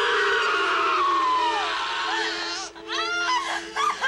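Horror-film sample of a screaming voice: a long drawn-out scream sliding down in pitch, then, from about three seconds in, a quick run of short shrieks, over a steady low drone.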